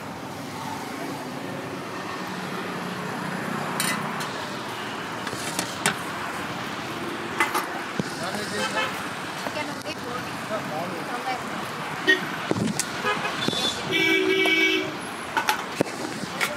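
Roadside street ambience: steady traffic noise and background voices, with scattered clinks of a serving spoon on steel pots. A vehicle horn honks for about a second near the end.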